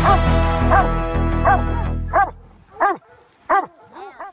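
Bear-hunting hound barking in short, repeated barks, about one every 0.7 seconds, over background music that fades out about halfway through, leaving the barks alone.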